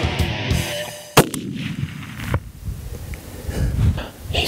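A single shot from a scoped Thompson/Center Pro Hunter break-action rifle about a second in, loud and sharp, followed by a rolling echo that dies away over about a second.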